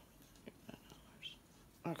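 Mostly quiet, with a few faint soft clicks and a brief whispered mutter about a second in, then a woman says "okay" near the end.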